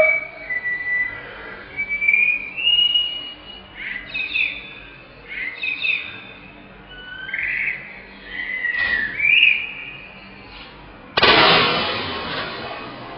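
A run of high whistle-like chirps and short gliding notes, then, about eleven seconds in, a sudden loud rush of noise that fades over a couple of seconds as the water rocket bottle is released from its launcher and lifts off.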